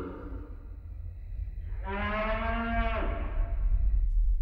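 A cartoon tractor's cow-like moo: one long call about two seconds in. Under it a low rumble grows steadily louder.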